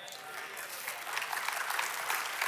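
Congregation applauding: a steady patter of many hands clapping that grows a little louder.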